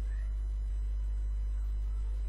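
Steady low electrical hum, typical of mains hum in a recording chain, with nothing else distinct over it.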